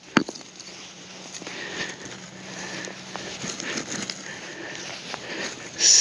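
A hand digging tool scraping and crunching through loose decomposed rock and soil, with one sharp knock near the start and a run of small gritty scrapes after it.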